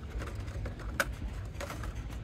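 Hot Wheels blister packs clicking and tapping against one another and the metal peg hooks as a hand flips through them, with one sharp click about halfway through, over a low steady hum.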